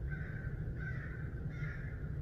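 A bird calling faintly in the woods, a few short calls about half a second apart, over a low steady rumble.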